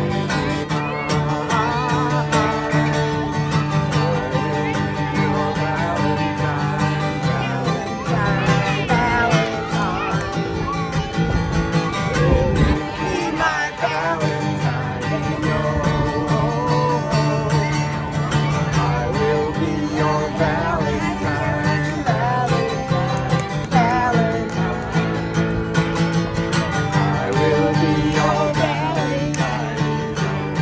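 Acoustic guitar strummed in a steady country-style rhythm while a man and two women sing a song together.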